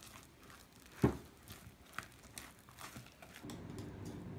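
Faint sounds of mixing batter in a bowl: scattered light knocks and rustles, with one sharper knock about a second in.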